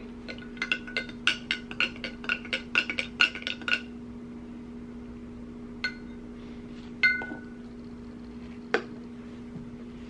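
Plastic spoon stirring liquid in a glass measuring cup, clinking against the glass about four times a second for nearly four seconds. A few single ringing clinks follow later as the spoon is tapped or lifted against the glass.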